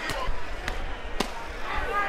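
Boxing gloves landing punches: three sharp smacks about half a second apart, over voices shouting around the ring.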